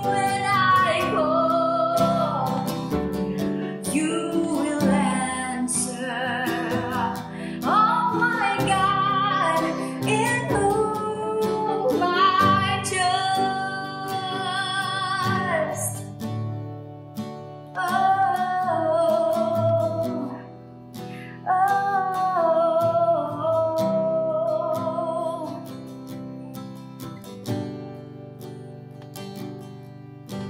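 A worship song: a woman sings a slow melody over acoustic guitar and keyboard. The voice pauses briefly twice in the middle, and the music grows softer in the last few seconds.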